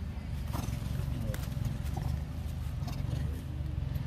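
Outdoor ambience: a steady low rumble with a few scattered clicks and faint short calls.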